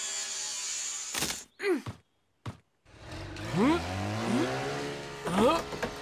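A steady hiss that cuts off with a knock about a second in, a short silence, then a person's voice making wordless groaning sounds.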